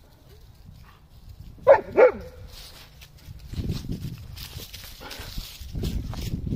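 A dog barking twice, two short loud barks about a third of a second apart, a couple of seconds in. Low, uneven rustling and rumbling noise follows.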